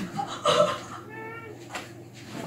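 A woman's soft cries just after falling off a fitness ball onto the floor: a short sound about half a second in, then a high, held wail lasting about half a second.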